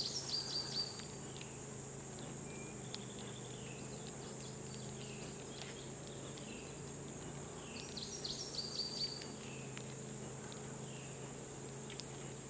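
Steady high trill of crickets, with a songbird singing short chirping phrases near the start and again about eight seconds in, over a faint low steady hum.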